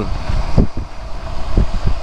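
Wind buffeting the microphone of a BMW K1600GT rider at road speed, in uneven low gusts, with the inline-six engine and road noise running underneath.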